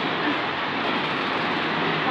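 Steady, even rushing background noise with no clear pitch.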